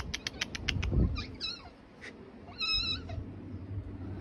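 Black-and-white domestic cat meowing: a short rising call a little over a second in, then a higher, wavering meow near the three-second mark. Before the first call comes a quick run of about eight sharp clicks.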